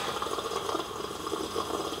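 A person slurping tea from a china teacup in one long, continuous slurp.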